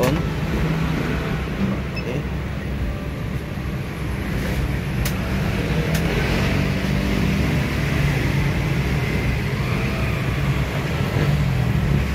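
Steady low mechanical rumble of background motor-vehicle noise, with a few faint sharp clicks about four to six seconds in.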